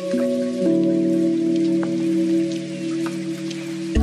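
Background music of long held chords with a few light plinking notes; the chord changes twice early on.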